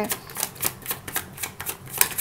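A deck of tarot cards being shuffled by hand: a quick, slightly uneven run of crisp card slaps and clicks, about four a second.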